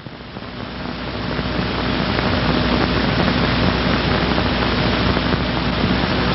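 Steady hiss with a faint low hum and no words, typical of an old 16mm film soundtrack running without narration. It swells over the first couple of seconds, then holds level.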